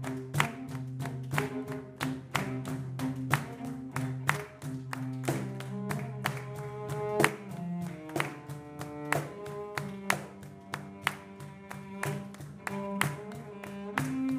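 Cello bowing a slow melody of held notes over a steady beat of cajón strikes, about two to three a second.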